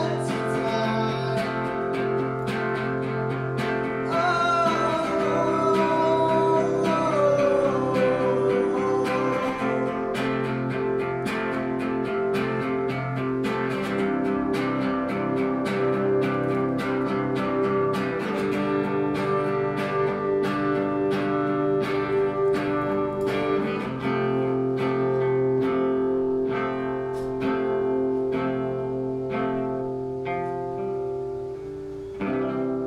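Acoustic guitar strummed in a steady rhythm. A man's voice sings a falling line a few seconds in, then the guitar goes on alone.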